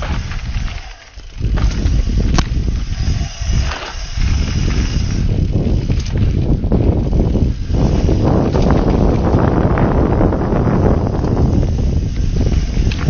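Mountain bike riding down a dirt trail: wind rushing over the microphone, tyres running over dirt and stones, and the bike rattling with a few sharp knocks over bumps. The noise grows louder and denser about two-thirds of the way through.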